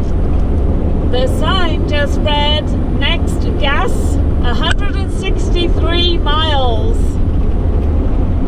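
Steady low road and engine rumble inside a vehicle's cab at highway speed. From about a second in until near the end, a high-pitched voice makes a run of short calls that swoop up and down in pitch.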